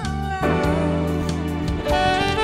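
A live band playing a slow pop ballad: a sustained melody line with vibrato over bass guitar and drums, changing chord about half a second in.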